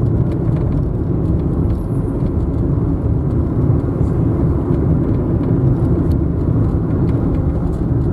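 Steady low rumble of a car driving at highway speed, heard from inside the cabin: tyre and engine noise.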